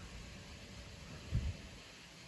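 Faint background hiss with one brief low thump a little after halfway through.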